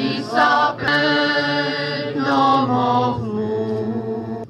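A choir singing a slow song in long, held notes, phrase after phrase.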